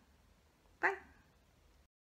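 Quiet room tone with one short voiced sound a little under a second in. The audio then cuts off abruptly into digital silence.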